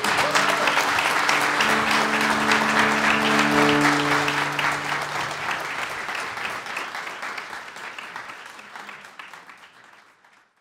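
Audience applauding, with a cello holding its last sustained notes underneath for the first five seconds or so. The applause then fades out steadily toward the end.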